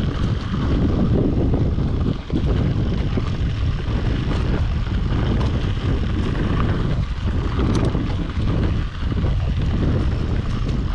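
Wind noise on the action camera's microphone mixed with the tyre and frame noise of a Yeti SB5 full-suspension mountain bike riding down a dirt singletrack: a loud, steady rumble with small scattered clicks and rattles.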